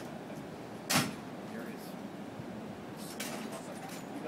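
A single sharp clack about a second in, the loudest sound, over steady background noise, with a softer rustling clatter near the three-second mark.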